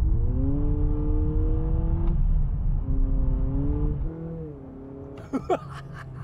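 Honda Accord e:HEV's four-cylinder engine revving under hard acceleration, heard from inside the cabin. Its pitch climbs for about two seconds, drops back as in a gearshift and climbs again, then falls away and quietens about four seconds in as the throttle eases.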